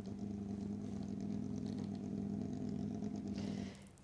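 Porsche 911 GT3 Cup race car's flat-six engine idling steadily, fading away in the last half second.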